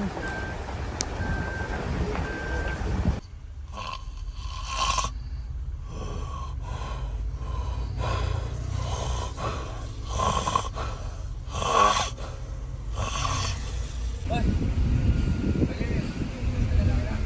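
A man asleep in a car seat snoring: a run of breathy snores about a second apart, after an abrupt cut from a car's low engine and road rumble with four short beeps. The rumble comes back near the end.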